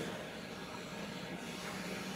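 Steady, low background hiss of room tone in a pause between words.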